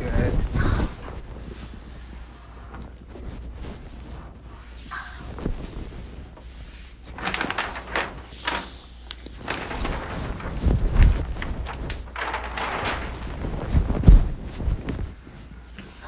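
Hands and a small plastic squeegee rubbing and sliding over 3M Di-noc vinyl film as it is pressed down over a desk's top and edges, heard as irregular bursts of scuffing and rustling with a few dull thumps near the end.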